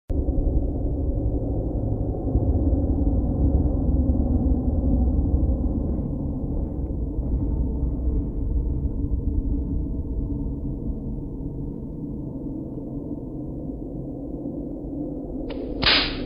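Low, rumbling drone of trailer sound design that slowly fades, with faint higher tones surfacing about midway. A sudden brighter hit comes just before the end.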